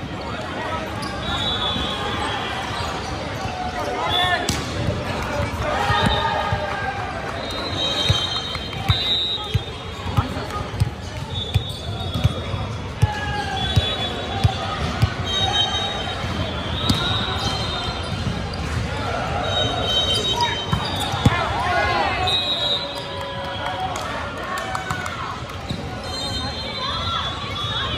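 Indoor volleyball in a large gym: players and spectators calling out, sneakers squeaking on the hardwood floor, and the volleyball being bounced and struck. In the middle there is a steady run of ball bounces, about two a second, ahead of a serve.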